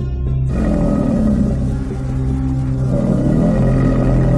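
A dinosaur roar sound effect, a deep growling roar that starts suddenly about half a second in, rises and falls, and runs over a steady ambient music drone.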